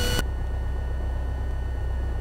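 Piper Cherokee's engine idling on the ground, a steady low drone heard through the headset intercom feed. A band of radio hiss stops just after the start as the outgoing transmission ends.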